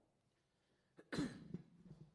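A single cough close to a microphone, sudden and loud about a second in, then dying away over about half a second.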